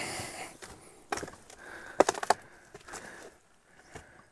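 A few sharp knocks and cracks, with a quick cluster of them about two seconds in, then quieter toward the end.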